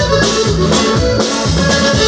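Norteño band playing live: an instrumental passage between sung lines, with sustained melody notes and guitars over a steady beat.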